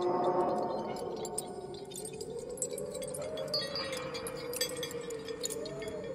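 Eerie, ghostly background music. Tinkling chimes sound over sustained tones, and one tone slowly wavers and glides up and down.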